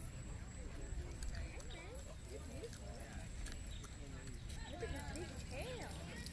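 Faint, indistinct voices of people talking at a distance, over a steady low rumble.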